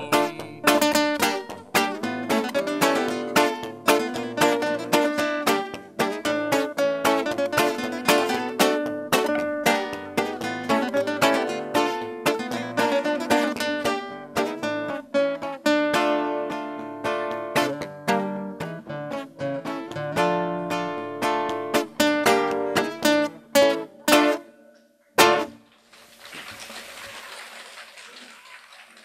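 Acoustic guitar playing the instrumental close of a bard song alone, with a brisk run of picked notes and chords and no singing, ending on a final strummed chord about 25 seconds in. Applause starts near the end.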